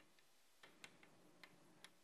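Near silence with a few faint, irregular ticks of chalk writing on a blackboard.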